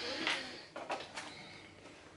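Faint rustling with a few light clicks and knocks of a person moving and handling things, dying away toward the end.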